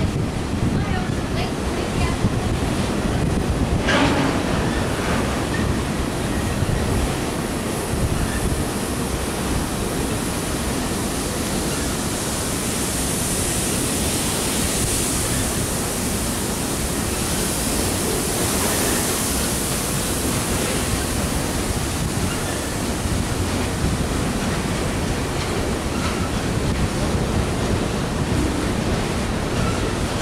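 Empty coal hopper cars rolling past on the rails: a steady, even rumbling rush, with one short sharp sound about four seconds in.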